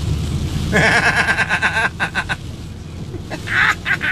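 A man laughing in two bouts, from about a second in and again near the end, over the steady low rumble of a moving vehicle heard from inside its cabin.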